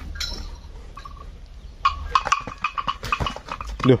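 A run of light, irregular metallic clinks that starts about halfway through.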